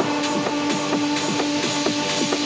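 Techno track playing in a DJ mix: a steady driving beat of repeating kick and hi-hat strokes over a held synth tone.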